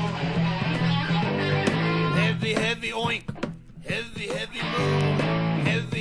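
Heavy metal rock music with distorted electric guitar over a sustained low bass line. From about two seconds in, the backing thins and sliding, wavering pitched lines take over.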